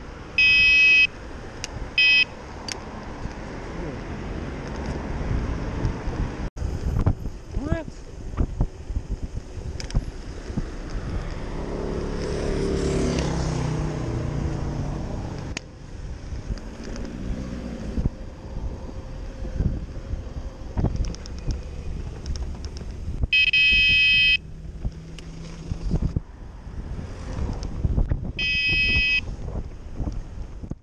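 A high-pitched horn sounding in four short blasts, the longest nearly a second, over steady wind noise on the microphone and passing road traffic. A heavier vehicle rumbles past in the middle.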